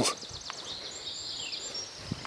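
Small birds singing: a run of quick, high chirps and a short falling trill about halfway through.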